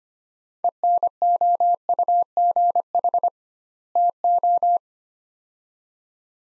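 Morse code sent at 25 words per minute as a single steady beep tone, keyed in short dits and longer dahs, spelling out the two words ENOUGH TO with a word gap between them. The code stops about five seconds in.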